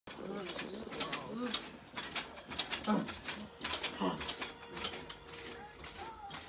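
Low, indistinct speaking voices with many scattered sharp clicks.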